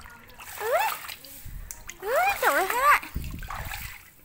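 A toddler's high-pitched wordless vocalizing, two rising-and-falling calls, with water splashing as the children play in water.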